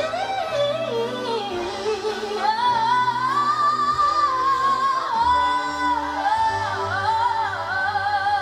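Wordless female vocal runs, sliding and wavering with vibrato, sung live over backing singers and a string orchestra holding sustained chords with changing bass notes.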